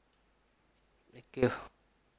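A couple of faint computer mouse clicks, followed about a second in by a single short spoken word, which is the loudest sound.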